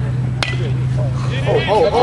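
Metal baseball bat hitting a pitched ball once, a sharp ping with a short ring, just under half a second in. Spectators shout excitedly near the end.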